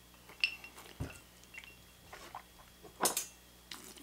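A few light clinks of ice cubes against a rocks glass as a cocktail is sipped and handled, with a soft thump about a second in as the glass is set down on a rubber bar mat, and a brighter clink near the end.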